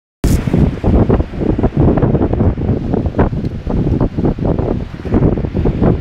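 Wind buffeting the microphone in loud, uneven gusts, over the wash of surf breaking on the shore.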